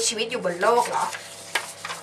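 A woman speaking briefly, then a single short click about one and a half seconds in.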